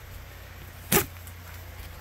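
A single short, sharp snick about a second in as a serrated pocket knife cuts through the packing tape on a cardboard box, over faint steady background noise.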